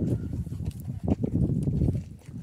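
Horses' hooves clopping irregularly on a dirt road, over a low rumble.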